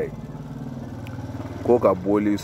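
A steady low engine hum from a motor vehicle running nearby. A man's voice comes back near the end.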